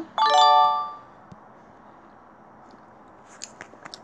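A bright electronic chime of several tones from a story app's quiz, sounding once to mark a correct answer and fading out within about a second. After it, quiet room tone with a few faint clicks near the end.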